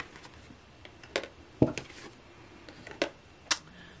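About four light clicks and taps as cards are set upright on small tabletop easel stands and the stands are handled.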